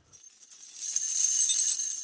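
A high metallic jingle with a shimmering ring. It swells from about half a second in and fades toward the end.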